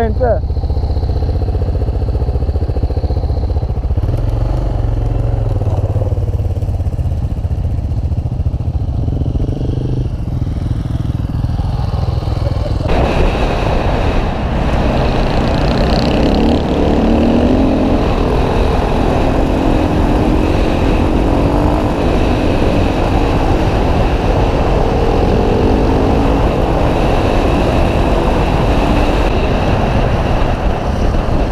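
Single-cylinder enduro motorcycle engine, first running at low revs, then about thirteen seconds in riding under load along a gravel track, with a sudden rise in wind and tyre noise that holds to the end.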